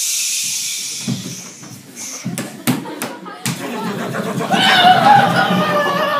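A loud hiss that fades over the first two seconds, then scattered knocks and bumps, and from about four and a half seconds in a wavering, high-pitched voice-like sound.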